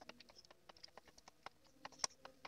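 Faint, irregular clicks and taps of a wooden stirring stick knocking against a plastic measuring jug while stirring calcium nitrate fertilizer granules that have not yet dissolved in the water.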